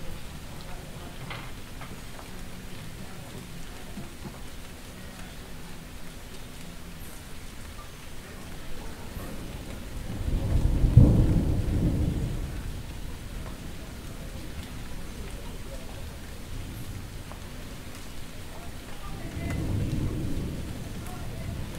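A deep roll of thunder swells about halfway through, peaks and fades over a few seconds over a steady low background. A smaller rumble rises near the end.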